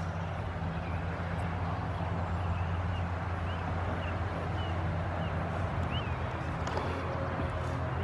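A steady low engine hum runs throughout, with a few short, high bird chirps over it in the middle.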